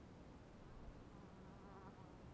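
Faint wavering buzz of a flying insect near the microphone, heard in the second half, over near silence.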